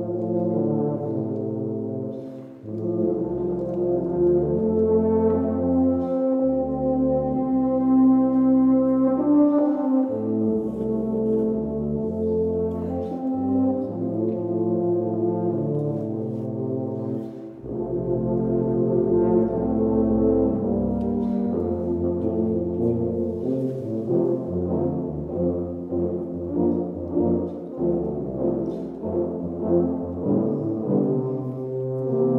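Low brass ensemble of tubas and euphoniums playing a medley of spiritual melodies in several parts, with sustained low notes and two brief breaks between phrases, about three and eighteen seconds in.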